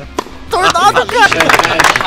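A single sharp crack of a tennis racket striking the ball, then from about half a second in a small group shouting excitedly and clapping.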